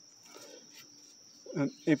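Insects chirring in the background: a faint, thin, steady high tone with no break. A man's voice starts near the end.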